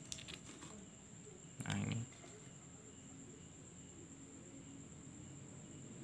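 Faint handling noise of a laptop's copper heat-pipe CPU cooler being lifted off the motherboard: a few light clicks and rustles, with one short louder sound about two seconds in.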